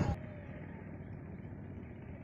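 Faint, steady low rumble of road traffic.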